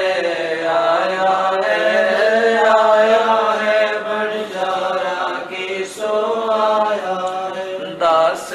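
A single voice chanting devotional verses in a slow melodic recitation, with long held notes.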